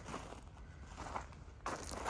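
Footsteps of a person walking on loose graded dirt and pine needles: a few soft, irregular steps that grow louder near the end.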